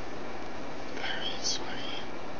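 Whispered speech over a steady hiss, with a sharp sibilant about one and a half seconds in.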